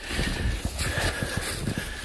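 Footsteps crunching through snow at a walking pace, short irregular crunches over a low rumble of wind on the microphone.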